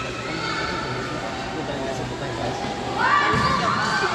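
High-pitched shouts and calls from girls playing and watching a futsal game in a large gymnasium, over a steady din of voices, getting louder about three seconds in.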